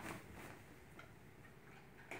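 Near silence: quiet room tone with a couple of faint short ticks about a second apart.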